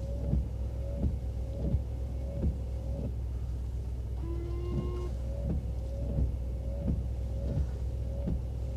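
Windshield wipers on a Ford Super Duty sweeping back and forth, heard from inside the cab. There is a soft knock at each turn of the sweep, a little more than once a second, and the new aftermarket blades run with no squeak, over a steady low hum.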